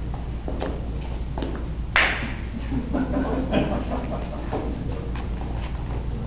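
Dancers' feet stepping on a hall floor, soft scattered taps over a steady low hum, with one sharp hissing scuff about two seconds in, the loudest sound.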